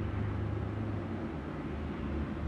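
Car engine and road noise heard from inside the cabin of a moving taxi: a steady low hum under a soft even rush.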